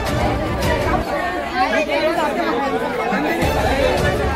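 A crowd of people talking over one another: many overlapping voices in a steady chatter.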